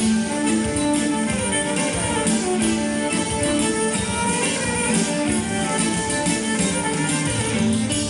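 Greek folk dance music with a violin melody over plucked strings, playing continuously at a steady dance tempo.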